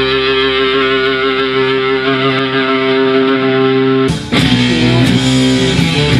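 Distorted electric guitar holding a sustained chord that rings out steadily. About four seconds in it cuts off abruptly, replaced by different, busier guitar playing.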